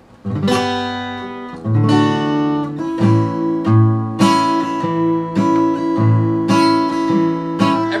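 Solid-mahogany Harley Benton acoustic guitar strummed with a thick pick on heavy 12-gauge strings: a slow run of chords, one stroke about every second, each left to ring into the next.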